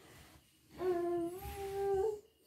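A person's voice holding one long hummed note, starting about a second in and rising slightly partway through.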